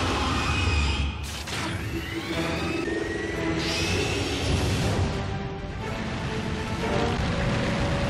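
Dramatic soundtrack music from an animated action show, mixed with booming and whooshing sound effects.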